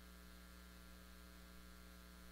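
Near silence with a steady, faint electrical hum.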